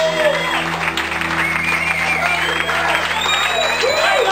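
A live band's held chord ringing out under a crowd applauding and calling out.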